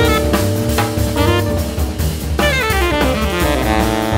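Jazz group playing: a horn line over drum kit and bass, with a quick falling run a little past halfway.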